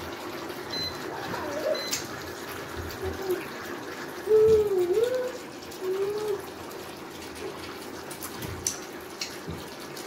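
Eating sounds from boiled yam with egg sauce eaten by hand: wet mouth and chewing noises with a few sharp smacks, and short closed-mouth "mmm" hums of enjoyment, the loudest a falling-then-rising hum about halfway through. A steady faint hum runs underneath.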